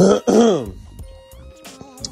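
A man clears his throat once at the start, a short gruff sound falling in pitch, followed by quieter background music.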